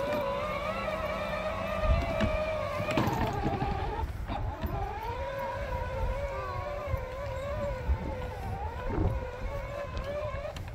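Electric drive motors and gearbox of a John Deere Gator kids' ride-on toy whining as it drives over grass, with a low rumble underneath. The whine dips and breaks off about three to four seconds in, then picks up again.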